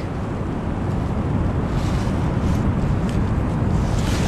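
Wind buffeting the microphone in a steady low rumble, over the wash of ocean surf breaking on the beach.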